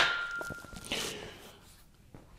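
Steel barbell set back onto the squat rack's hooks: a sudden metal clank with a single ringing tone that holds for about a second and then dies away.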